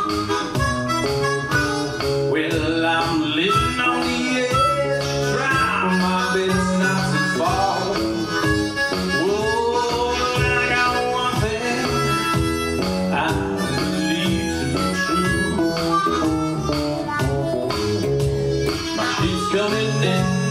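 Blues harmonica solo with bent, sliding notes, played into a microphone over an archtop electric guitar's rhythm.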